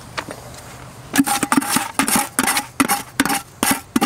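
Steel trowel scraping and tapping wet mortar into brick joints: after a quiet first second, a quick run of short scrapes and clicks, about three or four a second.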